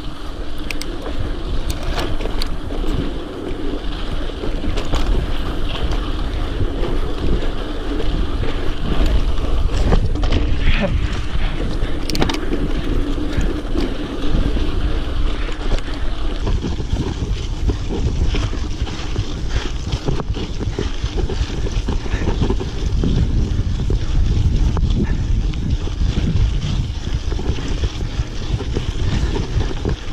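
Mountain bike rolling over a dirt singletrack trail, heard through heavy wind buffeting on the action camera's microphone, with occasional clicks and knocks from the bike over bumps. A low steady hum runs through the first half.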